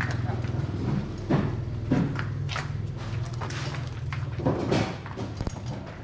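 A heavy carved hardwood sofa pushed along on a wheeled dolly: scattered knocks and scrapes of wood and wheels, over a steady low hum, with brief voices.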